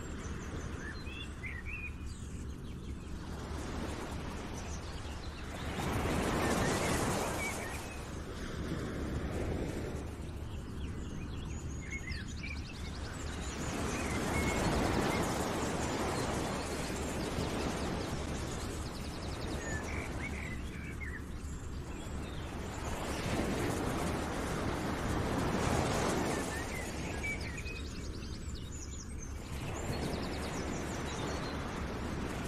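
Background nature ambience: small birds chirping over a rushing sound that swells and fades every several seconds.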